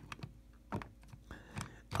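About five light, scattered clicks and taps as fingers handle the plastic tender of a Bachmann Edward model train.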